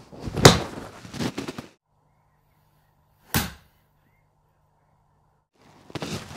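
A golf iron striking a ball off an artificial turf mat, one sharp loud crack, with the club's sole meeting the ground just after the ball and clipping the tee peg in front of it. That ball-first contact gives a well-struck, flighted shot. Further knocks follow for about a second, and a single sharp click comes near the middle.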